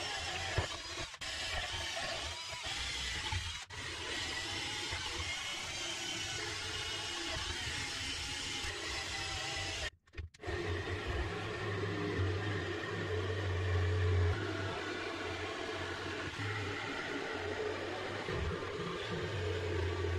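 Cordless drill running as it bores a hole through a plywood board. After a brief break about halfway, a cordless jigsaw cuts through the plywood, its motor and blade stroke giving a strong steady low buzz.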